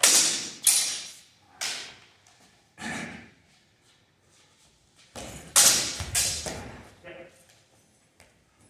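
Longsword sparring: training swords clashing and striking in a fast exchange, a series of sharp hits that each die away quickly. The loudest are at the very start and in a burst of several just past the middle, with a smaller one near the end.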